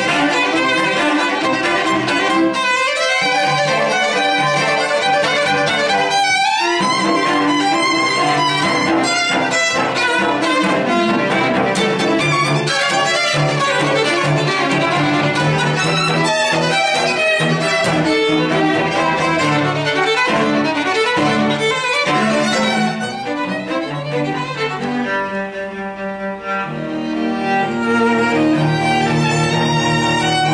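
Live string trio of violin, viola and cello playing a classical piece together, with two quick upward runs a couple of seconds and about six seconds in. The playing drops softer for a few seconds about three quarters of the way through, then comes back full near the end.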